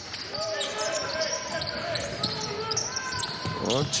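Arena sound of a basketball game: a ball being dribbled on the hardwood court in short irregular bounces over a steady background of faint voices in the hall.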